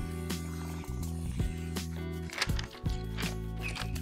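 Background music with held low bass notes, with a few short sharp clicks scattered through it.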